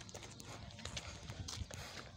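Faint, irregular scuffs and taps of feet stepping on dirt ground.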